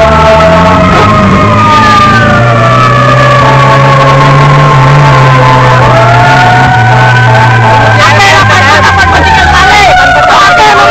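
Emergency vehicle sirens wailing, several tones slowly falling in pitch and then rising again about six seconds in, over a low steady drone.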